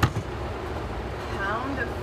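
A steady low rumble in the background, with a sharp click right at the start; a woman's voice comes in again near the end.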